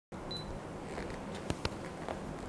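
A camera's short high beep as it starts recording, followed about a second and a half in by two sharp clicks of the camera being handled, over a steady low room hum.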